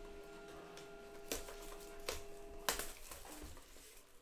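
A handheld cardboard trading-card box being turned over, giving three light clicks and taps against a steady background hum.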